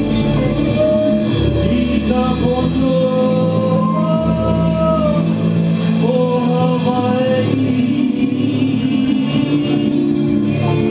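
Live reggae band playing loudly: a voice singing long held notes over electric guitar, bass and drums.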